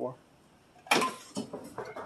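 Tools and a hard plastic tool case being handled on a bench: one sharp clack about a second in, then a few lighter knocks and rattles.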